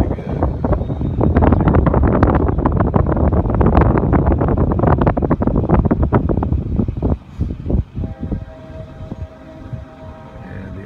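Wind buffeting the phone's microphone out of a moving car's window, with the car's road noise underneath, in loud uneven gusts. It eases off about seven seconds in.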